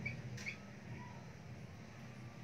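Marker pen writing on a whiteboard, with a few short, faint squeaks in the first half second, over a faint low hum.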